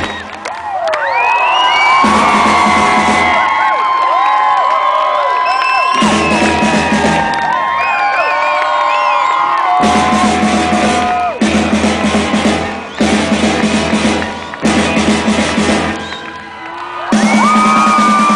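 Live rock band with a horn section, heard from the audience. The full band, drums and bass included, drops out and comes back in several times, while pitched lines carry on over the gaps and the crowd cheers and whoops.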